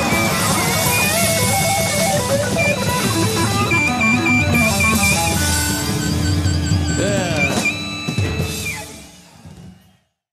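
A live blues-rock trio plays an instrumental passage: an electric lead guitar with held, wavering and bent notes over bass guitar and drums. The sound fades out over the last two seconds.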